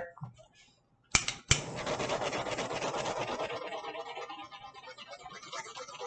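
Two sharp clicks about a second in, then several seconds of close scratchy rubbing and rustling that slowly fades: objects being handled right by the microphone.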